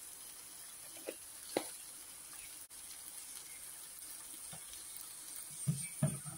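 Faint steady sizzle of onions, tomatoes and cashews frying in a nonstick pan, with two light taps about a second and a second and a half in. Near the end a wooden spatula starts stirring the pan.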